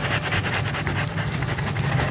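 A steady low motor-like hum, with a rough rustling and scraping as a heavy plastic plant pot full of potting mix is wobbled and tilted to work the plant loose.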